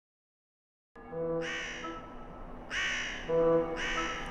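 A crow cawing three times, a little over a second apart, over quiet sustained music, starting after about a second of silence.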